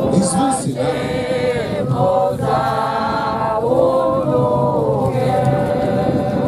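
A folk ensemble's mixed voices singing together a cappella, with long held notes.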